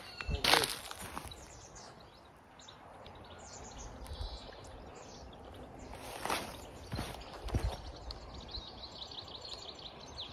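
Outdoor garden ambience with small birds chirping, ending in a rapid high trill over the last couple of seconds, and a few soft thumps, the loudest about half a second in.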